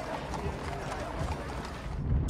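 Horses' hooves clopping on a paved street, with faint voices behind, from a TV drama's soundtrack.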